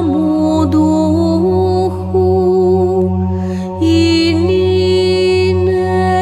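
Orthodox church choir singing Byzantine chant without instruments: a steady low drone (the ison) held throughout under a slow, ornamented melody line that moves between long notes.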